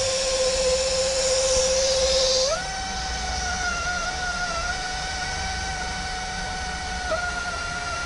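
Fiber blowing machine running as fiber is blown into the emptied cable duct: a steady motor whine that steps up to a higher pitch about two and a half seconds in, with compressed air hissing until the step and a low rumble underneath.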